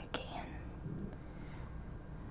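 A soft breathy, whisper-like sound from a person with a small click just after the start, then quiet room tone with one more faint click about a second in.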